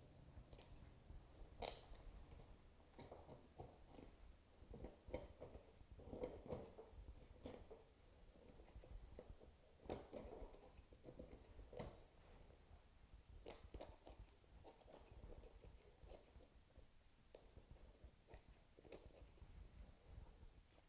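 Faint, scattered snips of small scissors and soft wet sounds of flesh as meat is cut and scraped off a pheasant's wing bones.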